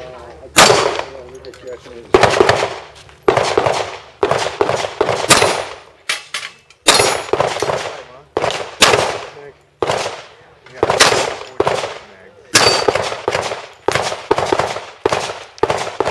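Pistol fire in a practical shooting stage: many shots in quick pairs and short strings, with brief pauses between groups as the shooter moves between positions.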